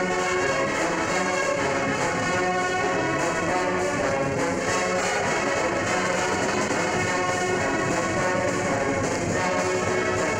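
A university varsity band playing a big band medley live, with the brass section, trombones and trumpets, to the fore. Heard from a vinyl LP recording.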